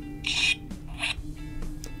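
Hasbro Lightning Collection Power Morpher toy's speaker sputtering as its sound effect cuts out: short raspy hissing bursts over steady tones, the loudest burst about a quarter second in and another near the middle. The owner suspects weak batteries or faulty electronics.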